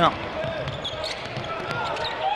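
Basketball bouncing on a hardwood court as it is dribbled, a few scattered bounces over steady arena crowd noise.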